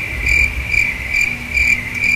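A steady high-pitched chirping tone that swells and fades about twice a second.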